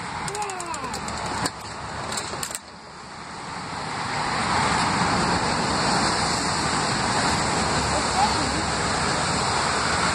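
A few clicks and knocks, then the steady hiss of rain falling outdoors, which swells about three seconds in and holds level.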